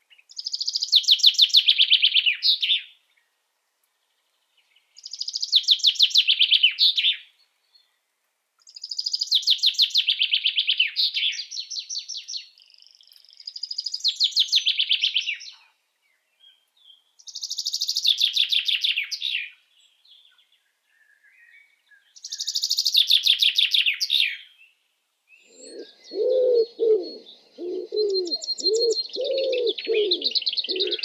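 Birdsong: a songbird sings rapid trilled phrases of two to three seconds each, drifting down in pitch, about every four seconds with short silences between. Near the end a second, much lower call starts repeating in short pulses under the song.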